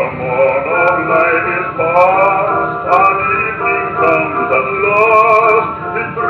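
A 1928 Victor 78 RPM record played on an acoustic Victrola talking machine with a Tungs-Tone stylus: singing with vibrato over instrumental accompaniment, the sound thin with no high treble, and scattered surface clicks from the record.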